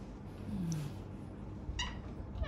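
A woman's low, closed-mouth "mmm" of satisfaction while eating, a short hum that falls in pitch. A brief high-pitched squeak follows near the end.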